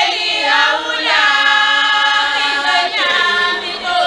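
A large group of voices singing a Swazi ceremonial song together without instruments, holding one long chord through the middle.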